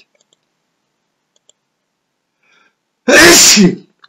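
A person sneezing once, loudly, about three seconds in; the sneeze lasts under a second.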